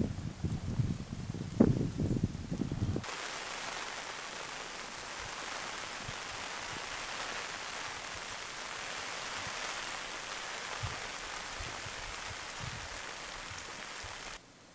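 Steady rain falling on and around a camping tarp, an even hiss. It comes in sharply after about three seconds of low, irregular thumps and rumbles.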